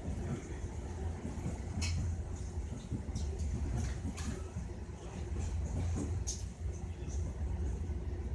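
Steady low rumble inside a moving train carriage, with a few sharp clicks about two seconds apart.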